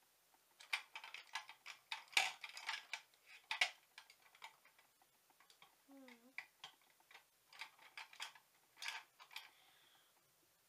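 Makeup cases and tubes being rummaged through: a run of light plastic clicks and clatters, busiest in the first four seconds and again near the end.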